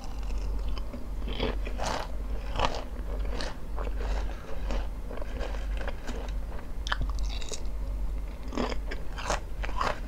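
Crisp potato chips being chewed close to the microphone: a dense string of irregular, sharp crunches.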